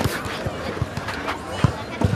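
Boxing gloves smacking into focus mitts, about five sharp hits in quick succession, the loudest one near the end, with voices in the background.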